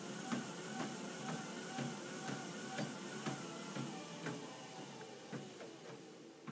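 Footsteps on a running treadmill belt, about two a second over the machine's steady hum: a brisk, short-stride walking cadence at a slow walking speed. The sound slowly fades toward the end.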